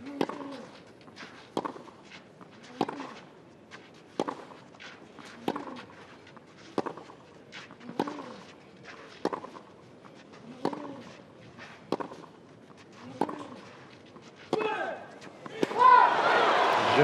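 Tennis rally on a clay court: about a dozen racquet-on-ball strikes at an even pace of roughly one every 1.3 seconds, with one player grunting on every shot he hits. The crowd starts to cheer right at the end as the point is won.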